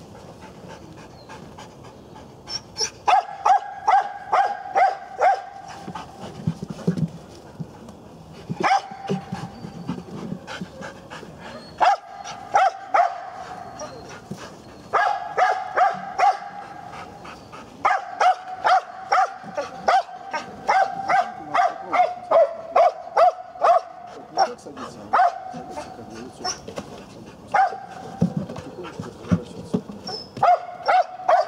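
Dog barking in quick runs of several barks, about three a second, with panting in the pauses between runs. The dog is barking at a decoy crouched behind a tyre hide, the guard-and-bark of a mondioring search exercise.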